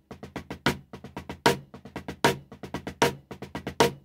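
Wooden drumsticks playing a drag-triplet rudiment on a drum: quick soft double strokes with about five evenly spaced loud accented strokes standing out above them.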